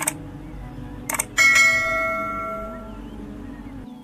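Subscribe-animation sound effects: a click, another click about a second later, then a bright bell chime that rings out and fades over about a second and a half, over soft background music.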